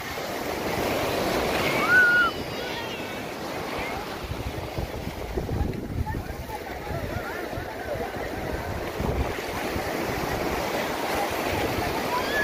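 Sea surf breaking and washing up the beach, with wind buffeting the microphone. A child's short call sounds about two seconds in, and voices are heard faintly now and then.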